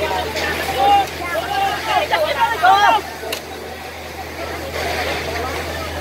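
People's voices talking and calling out, busiest in the first half, over a steady low hum.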